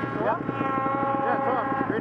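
A person's drawn-out voiced call, one long held note lasting about a second and a half, over a snowmobile engine idling steadily.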